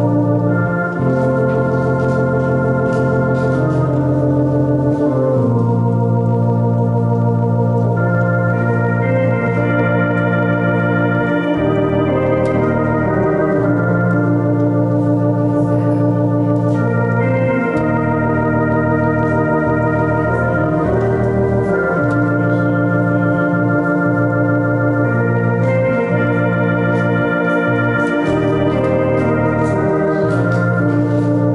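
Electronic organ playing a slow piece in long sustained chords, the notes held and changing every second or two at an even volume.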